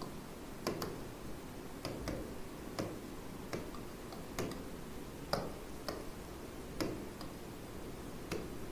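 Faint, irregular taps and clicks of a stylus on a digital writing screen as words are written by hand, roughly one tap a second.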